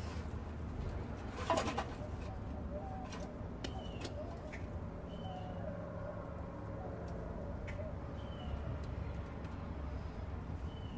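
Birds calling in the open, with short high calls a few times and lower curving notes, over a steady low hum. A knock about a second and a half in, and a few light clicks.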